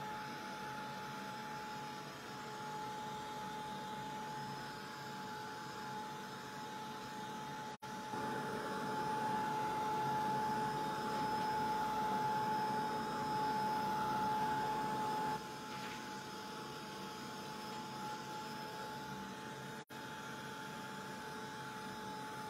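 Handheld craft heat gun running steadily with a blower whine, drying wet paint on a paper journal page. It gets louder for several seconds in the middle, and the sound drops out for an instant twice.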